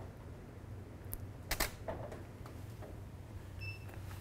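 Camera shutter release clicking as the shot is taken with the studio flash: two sharp clicks about half a second apart, the second louder. A short high beep sounds near the end.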